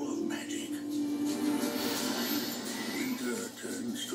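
Film-trailer music playing from a television's speakers, heard in the room.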